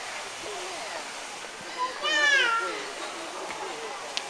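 A loud, high cry lasting under a second and falling in pitch, about halfway through, over the background murmur of passing shoppers.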